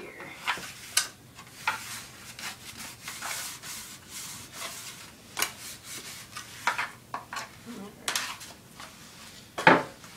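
Hands pressing and stretching pizza dough into an oiled baking pan: soft rubbing and scuffing with scattered light knocks against the pan, and one louder knock of the pan near the end.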